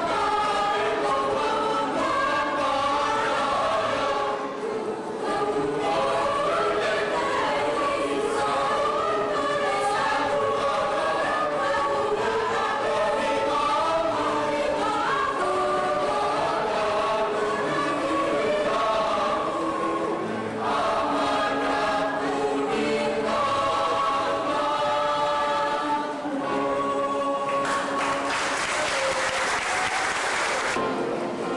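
Mixed choir of men's, women's and children's voices singing together in parts under a conductor. Near the end a rush of noise rises over the held chord.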